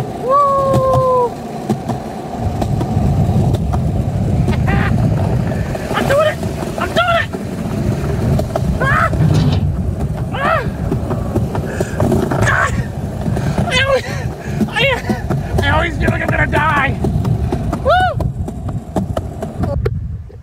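Skateboard wheels rumbling over pavement on a fast ride, with short shouted exclamations every second or two.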